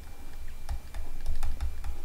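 Stylus tip tapping and clicking on a pen tablet while handwriting is written, an irregular run of small sharp clicks over a low steady hum.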